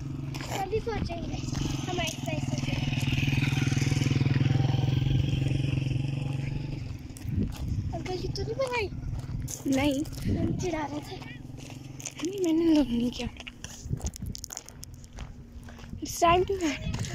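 Jogging footsteps crunching on a gravel path, with a low engine hum that swells and fades over the first seven seconds.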